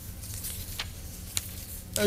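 Quiet room noise with a low hum and two faint clicks about half a second apart.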